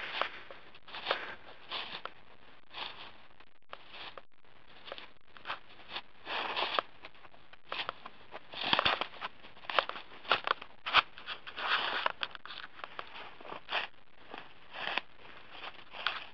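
Footsteps crunching through dry fallen leaves and grass, an irregular step about every second.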